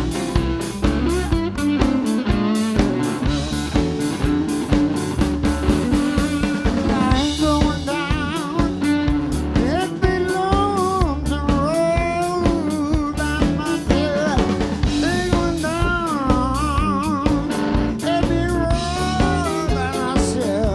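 Live blues band playing: electric slide guitar with wide vibrato leads over drum kit, bass and keyboard with a steady beat.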